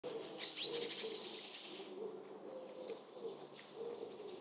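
Faint birdsong: small birds chirping over the first two seconds, with low repeated cooing calls throughout.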